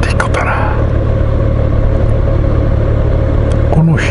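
Motorcycle engine idling while stopped in traffic: a steady low rumble.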